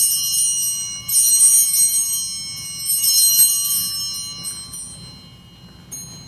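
Altar bells (Sanctus bells) rung in three peals about a second or two apart, each a cluster of high ringing tones that fades out, with a faint short ring near the end. The bells mark the elevation of the consecrated host during the Eucharist.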